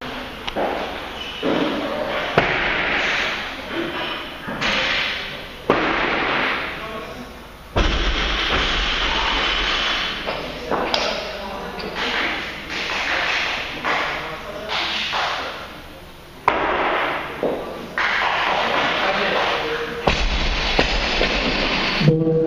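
Noisy weightlifting hall with voices, and sudden thuds of a barbell with rubber bumper plates meeting the platform.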